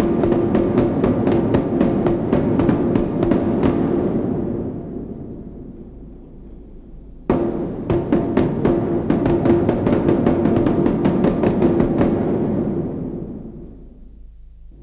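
Title music: fast, dense drum strikes over a held tone. The phrase fades out midway, a new one starts suddenly about seven seconds in, and it too fades away near the end.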